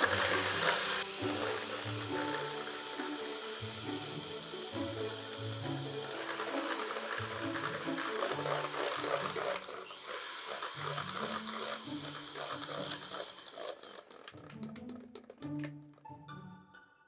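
Electric hand mixer running steadily, its twin beaters whipping cream in a stainless steel bowl toward soft peaks; the motor stops near the end. Background music plays under it.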